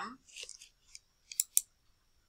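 A quick run of sharp computer mouse clicks about a second and a half in, as the Show/Hide paragraph-marks button in Word is switched on.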